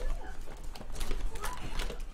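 Cardboard trading-card hobby box being handled on a table: irregular taps, knocks and scrapes of cardboard.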